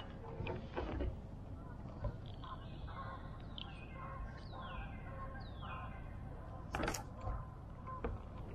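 Birds calling, with several short falling calls in the middle, over low knocks and handling sounds on a kayak hull. One sharp knock near the end is the loudest sound.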